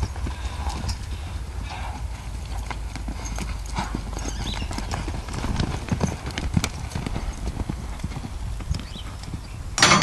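Hoofbeats of a ridden horse moving over a dirt arena, a scatter of dull knocks over a low rumble like wind on the microphone. There is one loud sudden burst just before the end.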